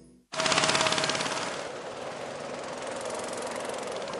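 A sudden, loud burst of very rapid rattling starting just after a brief silence, peaking at once and easing into a steadier fast rattle with a held tone beneath it: a dramatic sound effect.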